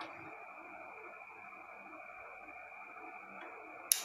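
Faint steady hiss with a thin high tone, then a single sharp click near the end, typical of the opened 220 V relay's contacts pulling in as its coil is powered.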